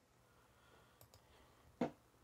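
Quiet room tone with a couple of faint clicks about a second in, then one short, sharper click just before the end.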